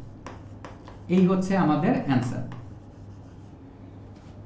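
A stylus writing on the glass of an interactive display screen: short taps and scratches of the pen tip as letters and a structural formula are written. A man's voice is heard briefly in the middle and is louder than the writing.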